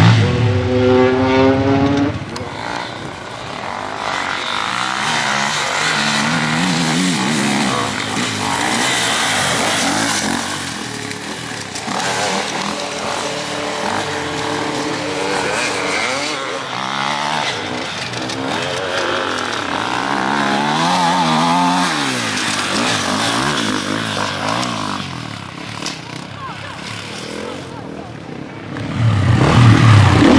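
Enduro dirt-bike engines revving on a dirt course: one bike close by, its pitch rising as it accelerates over the first two seconds, then bikes revving up and down further off, and a close bike growing loud again near the end.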